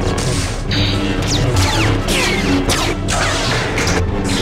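Lightsaber sound effects: several sharp clashes of blades, with swung blades gliding down in pitch between them, over a music score.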